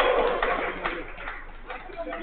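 A man's long drawn-out shout, falling in pitch, dies away at the start, followed by fainter calls and a couple of sharp knocks during a five-a-side football match.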